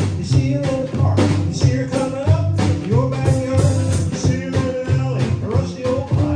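A small live band playing a rock-and-roll/blues song: a strummed acoustic guitar and drums keeping a steady beat, with a man singing over them.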